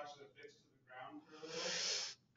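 Faint, distant speech, then a short hiss of about half a second near the end.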